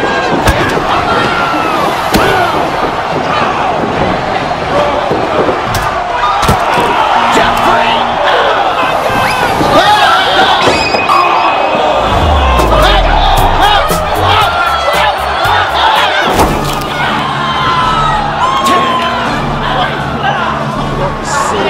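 A group of young men shouting, yelling and laughing over one another while play-wrestling, with scattered thuds and knocks of bodies, over background music.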